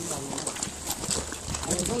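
Indistinct voices of several people talking, with scattered light clicks and taps.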